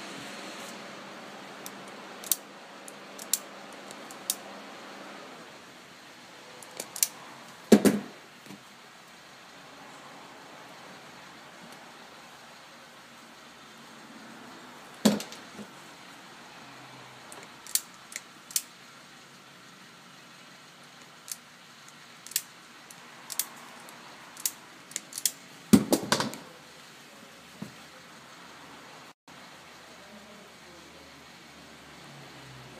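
Hand-tool clicks and small metallic clatter from crimping ring terminals onto speaker cable, with several louder knocks about 8, 15 and 26 seconds in.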